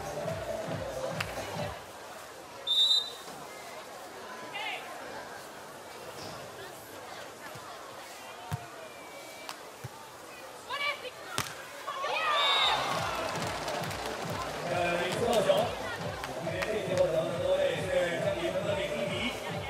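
Arena music with a steady thumping beat stops about two seconds in; a short, loud referee's whistle blast follows, then a quieter stretch of crowd murmur broken by a few sharp thuds of hands striking a beach volleyball during a rally. The beat-driven music comes back in about two-thirds of the way through, once the point is over.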